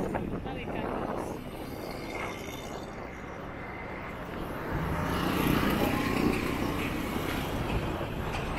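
Road traffic on a town street: cars and motorbikes passing, with one vehicle passing closer and louder from about five seconds in.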